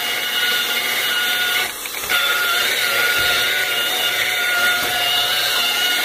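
Electric rotary polisher running steadily with a whine as its pad works a polish-and-sealant mix over a painted stove top, with a brief dip in the motor sound about two seconds in.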